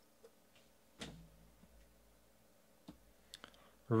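A few faint clicks and taps from hands handling trading cards, the loudest about a second in, with a short low thud after it.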